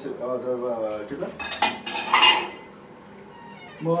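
Crockery and cutlery clinking and clattering as washed dishes are handled and wiped dry with a cloth. There is a sharp clink about a second and a half in, then a louder clatter just after two seconds.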